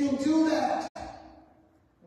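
A man's drawn-out wordless vocal sound, about a second long, cut off sharply, followed by a fading echo.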